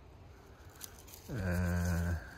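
A man's voice holding a drawn-out hesitation sound, a steady 'eee' of under a second, beginning past the middle after a quiet first half.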